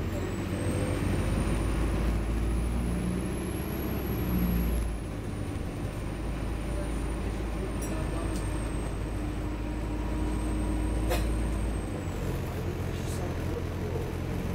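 Inside an Optare Versa single-deck bus on the move: a steady low engine drone with road noise, the engine note changing about five seconds in and again near the end. A thin high whine rises slightly and then falls away, and a couple of sharp clicks come in the second half.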